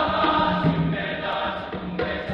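Large men's choir singing together in parts, with short, low drum notes at intervals beneath, fitting a conga accompaniment.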